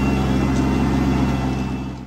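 Tractor engine running at a steady speed, heard from the driver's seat.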